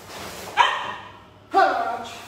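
Two short, sharp shouts (kiai) from karateka performing a kata, about a second apart, each starting suddenly and dying away.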